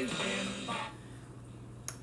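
Music from the Magnavox 1V9041's radio playing through its speaker, cutting out about a second in and leaving a low steady hum. A single sharp click comes near the end as a control on the set is worked.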